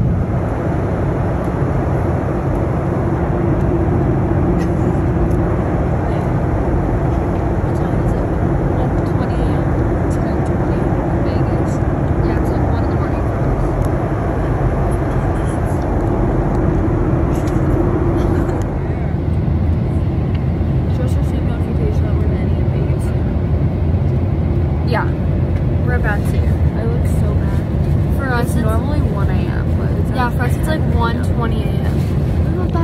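Jet airliner cabin noise in flight: a steady low rumble of engines and airflow. Faint voices come in over it in the last few seconds.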